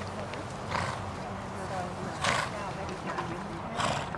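Lipizzaner horse trotting under a rider on sand arena footing. Three short rushing bursts come about a second and a half apart.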